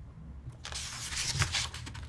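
Rustling and crackling of handling close to the microphone, starting about half a second in, over a low steady hum.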